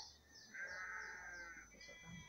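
A faint animal call: one drawn-out cry lasting about a second, starting about half a second in.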